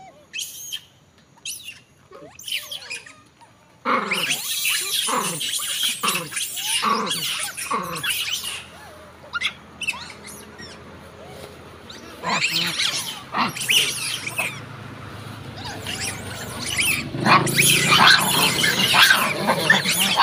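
A troop of long-tailed macaques screaming: a few short calls at first, then a sudden burst of many shrill, falling shrieks about four seconds in, more around twelve seconds, and a dense outburst of calls near the end.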